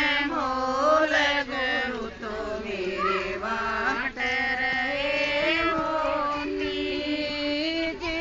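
Women singing a Haryanvi devotional song to the guru in long, held, gliding notes, with no drum or instrument heard.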